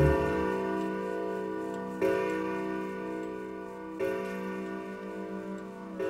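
Grandfather clock striking: a bell is struck about every two seconds, four strokes in all, and each one rings on into the next.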